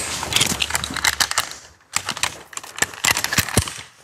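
Metal rope access hardware being handled: a descender and carabiners clinking and clicking in a run of irregular small metallic clicks and rattles, with a brief pause about halfway through.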